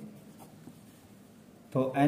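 Pen scratching on paper in a few faint, short writing strokes.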